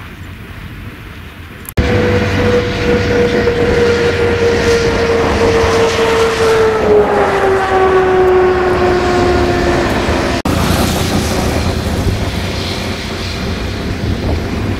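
A steady engine or motor tone over loud rumbling noise. It starts suddenly about two seconds in, holds one pitch, then slowly falls in pitch before cutting off near ten seconds, leaving the rumble.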